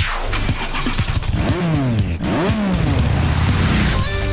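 TV channel opening ident music with whooshing sound effects: a sweeping rush at the start and several swooping pitch glides in the middle, over a steady bass bed.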